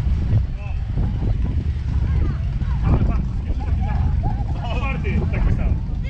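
Wind buffeting the microphone, a continuous low rumble, with scattered chatter of people walking close by.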